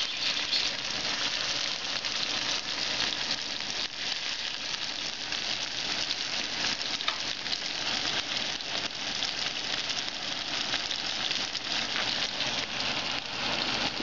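Chicken breasts and diced onion frying in oil in a nonstick frying pan: a steady sizzle.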